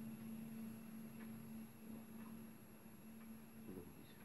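Near silence: quiet room tone with a steady low hum, a few faint soft clicks, and a brief faint sound near the end.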